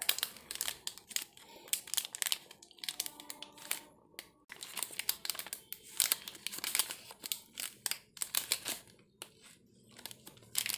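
Shiny metallised plastic chocolate-bar wrapper crinkling as it is handled and turned over in the fingers, in an irregular run of sharp crackles that thins out near the end.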